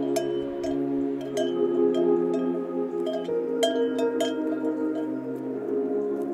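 Ambient background music: sustained chords with frequent light, chime-like strikes ringing over them. The chord shifts a little past halfway.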